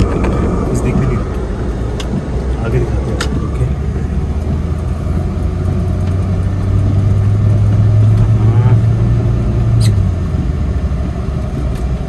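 Car driving on a wet road, heard from inside the cabin: a steady engine and tyre rumble. A deeper engine drone swells from about five seconds in and cuts off just before ten seconds.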